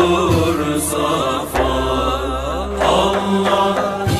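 A male voice singing a Turkish naat in makam Rast, in long ornamented melismatic phrases over a low steady drone.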